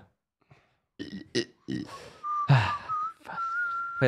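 A man burps about two and a half seconds in. This is followed by short whistled notes at a steady pitch, the last one held until the end.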